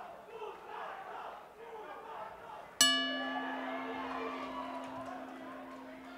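Boxing ring bell struck once about three seconds in, ringing on with a long, slowly fading tone over crowd chatter: the opening bell that starts the first round.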